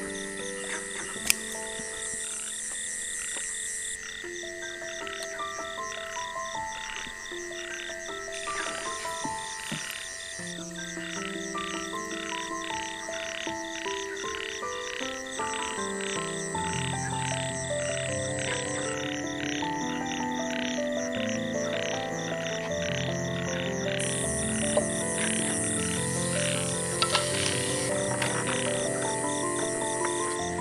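Soft instrumental background music, a slow melody of single notes that is joined by deeper bass notes about halfway through. Beneath it runs a steady, evenly pulsing chorus of calling night animals such as frogs.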